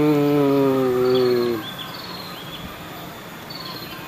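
A man's voice holding one long, steady chanted tone, like an intoned prayer, which stops about a second and a half in. After it, birds chirp faintly in the background.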